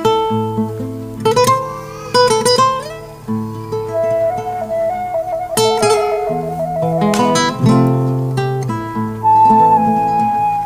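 Nylon-string classical guitar fingerpicked in duet with a wooden transverse flute playing a slow melody of held notes. One long flute note wavers rapidly through the middle, and the flute moves to a higher note near the end.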